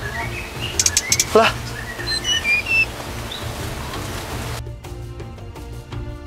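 Small songbirds chirping in an aviary: short, high, separate chirps over the first three seconds, with a quick burst of clicks about a second in. About four and a half seconds in, the background hiss drops away and soft music with a steady beat takes over.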